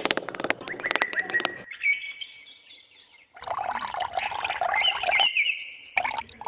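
Small hand trowel scraping and digging in coarse sand, a rapid gritty rattle for the first second and a half, with birds chirping over and after it. About halfway through comes a second spell of scratchy noise under more chirping.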